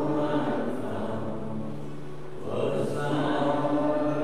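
Voices singing a hymn in slow, held notes; the singing eases off about two seconds in, and a new line begins about half a second later.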